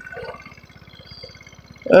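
150cc GY6 scooter's single-cylinder four-stroke engine running at low revs: a low, even putter, quiet under the rider's voice.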